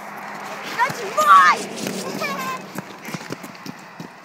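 A child's voice calling out briefly about a second in and again a moment later, with scattered footsteps of boots on wet pavement.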